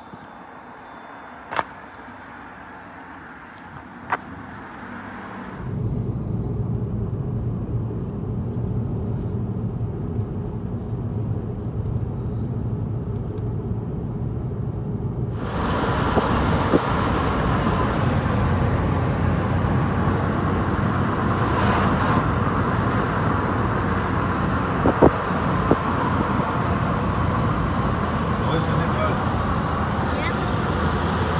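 Car driving: steady engine hum and tyre noise heard from inside the cabin, starting suddenly about six seconds in after a quieter stretch with a couple of clicks. About halfway the road noise turns brighter and louder.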